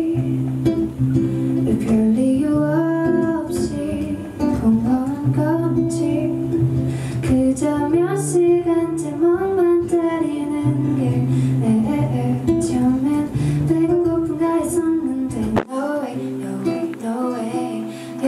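A woman singing a slow melody to guitar accompaniment. The low accompaniment drops out about two seconds before the end, leaving the voice more exposed.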